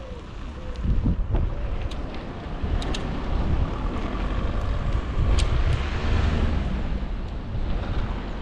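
Wind buffeting a moving camera's microphone, a strong uneven low rumble that swells about a second in and again past the middle, with a few sharp clicks.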